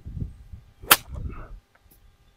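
A golf club striking the ball on a full approach shot: one sharp, loud crack about a second in, with low rumbling noise around it.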